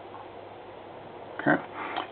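Steady faint hiss of room tone, then a man says "okay" about one and a half seconds in.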